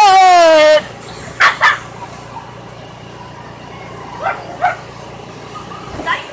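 A child's long, shrill squeal that falls in pitch, then short cries in pairs, two about a second and a half in and two more about four seconds in.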